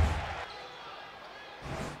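A deep thud at the start that dies away over about half a second, then faint arena crowd noise, with a second, shorter low thud near the end.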